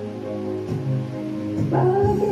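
Backing music with long held chords, and a woman singing through a microphone who comes in strongly near the end.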